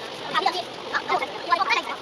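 People's voices played back at four times speed, squeezed into a rapid, high-pitched chatter.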